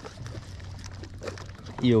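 Soft water lapping against a small boat's hull, with faint small splashes and ticks, before a man's voice comes back near the end.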